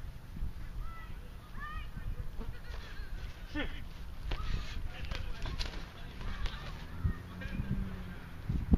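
Kickboxing sparring: scattered thuds and scuffs of strikes and footwork on grass, over a low steady outdoor rumble. Short honking bird calls sound twice in the first two seconds.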